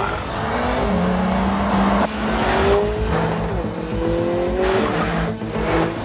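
Car engine accelerating hard through the gears: its pitch climbs steadily, drops back at each gearshift, and climbs again several times, over a rushing noise.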